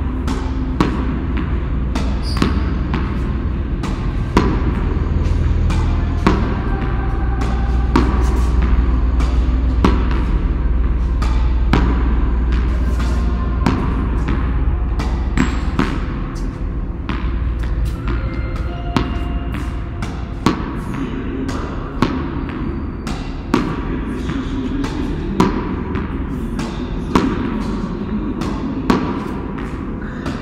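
Tennis ball struck with a racket and bouncing on a concrete floor, a sharp hit every second or two, each echoing in the car park.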